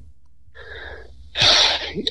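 A person breathing: a faint intake of breath, then about a second and a half in a short, loud, noisy burst of breath close to the microphone, sneeze-like.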